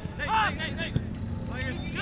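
Distant shouting voices of spectators and players across an outdoor soccer field, over a steady low rumble of wind on the microphone, with one sharp knock just under a second in.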